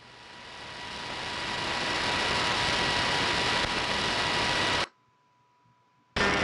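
Shortwave AM static from an RSPduo SDR receiver scanning the 31-metre band: steady hiss with a faint steady whistle, swelling up over the first second or so. About five seconds in, the audio cuts off abruptly as the scanner mutes and steps to the next frequency.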